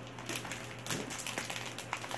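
Thin clear plastic packaging of a mochi tray being handled, giving a few short crinkles and clicks.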